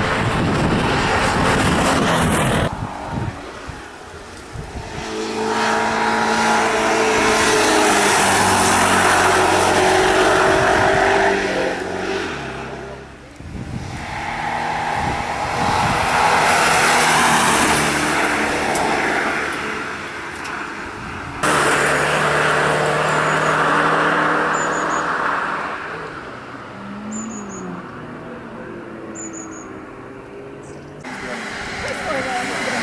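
Alfa Romeo Alfasud Sprint's flat-four engine driven hard up a hillclimb, revving up and down through the gears as the car accelerates and approaches in several separate passes. The engine note changes abruptly between passes and dies down near the end.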